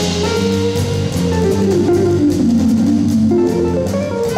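Jazz guitar playing a solo line of single notes over bass and soft drums in a jazz band. The line steps downward and climbs again near the end.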